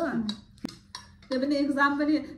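A metal spoon clinks once sharply against a ceramic plate, followed by a few fainter ticks of cutlery on the dish.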